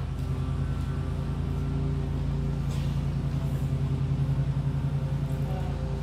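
A steady low mechanical hum with several held tones and an even level.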